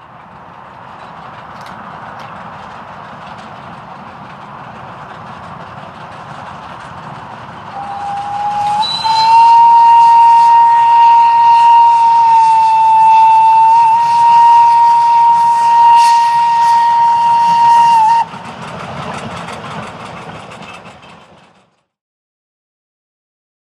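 Steam locomotive whistle blowing one long blast of about ten seconds over the running sound of a steam train. The whistle steps up slightly in pitch as it opens and stops abruptly. The train sound fades in at the start and fades out near the end.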